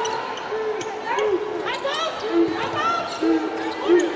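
Basketball dribbled on a hardwood court during live play, with brief sneaker squeaks and voices from the players and crowd in the arena.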